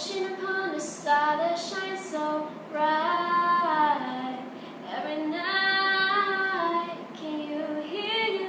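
A girl singing a cappella, her voice alone with no instruments, holding two long notes in the middle of the phrase.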